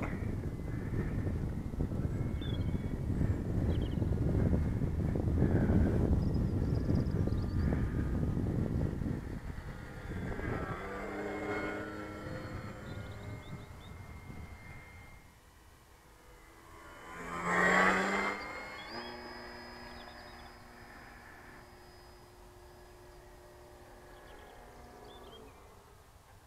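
Radio-controlled model plane flying overhead, its motor and propeller droning. The drone swells into a louder pass about eighteen seconds in, then holds steady and faint. For roughly the first nine seconds a rough low rumble covers it, typical of wind on the microphone.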